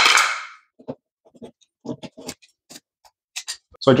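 Channel-lock pliers working finishing nails out of baseboard trim: a short scrape at the start, then scattered light clicks and taps of metal pliers and nails.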